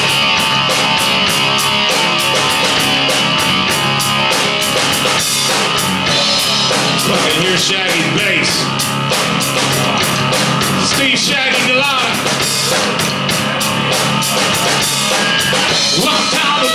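Live heavy rock band playing: distorted electric guitar, bass guitar and drum kit, with fast, steady cymbal strokes driving the beat.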